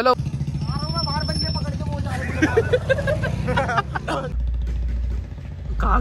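A vehicle engine runs steadily under some talking and fades out about four seconds in. Then wind buffets the microphone twice near the end.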